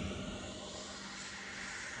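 Faint, steady distant engine drone with a low hum, over outdoor background noise.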